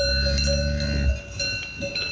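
Cowbells on grazing alpine cattle ringing, clanking a couple of times. A steady low call, a cow lowing, fills the first second.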